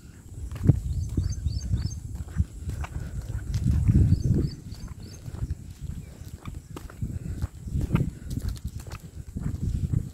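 Footsteps on a concrete path, with wind buffeting the microphone in uneven gusts, strongest about four seconds in. A few faint bird chirps come through near the start and again around three seconds.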